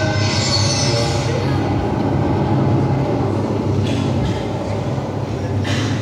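A loud, steady rumbling noise with a low hum under it, played as a dramatic sound effect through the hall's loudspeakers. A hissing layer fades out over the first second or so.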